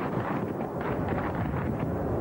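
Steady rumble with a rapid crackle: wind buffeting the camera microphone, mixed with the distant noise of an artillery bombardment.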